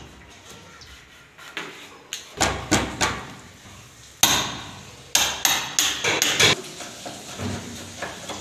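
Hammer strikes on wood at a door being fitted with a lock: a few blows about two seconds in, the loudest single blow about four seconds in, then a quick run of about six more.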